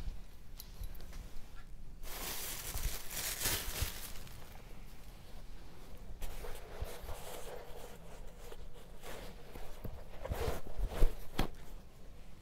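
Oil paint being mixed on a palette: an irregular run of short noisy strokes starting about two seconds in, with a sharp knock near the end.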